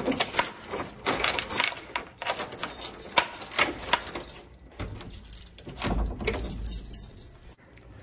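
A bunch of keys jangling and clicking as a key is worked in a door lock beneath a metal lever handle, with duller handling knocks in the second half.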